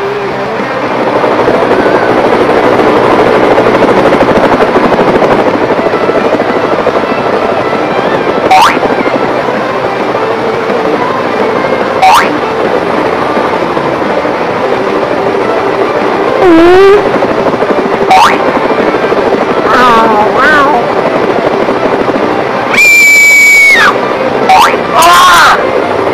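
Cartoon soundtrack: music under a dense, steady hiss, cut by quick rising whistle effects about 8, 12 and 18 seconds in, wavering sliding tones around 16 and 20 seconds, and a loud, high, held squeal near the end.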